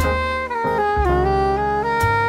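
Smooth jazz instrumental: a saxophone plays a legato melody that steps down and climbs back up, over piano chords and a low bass note that comes in about halfway through.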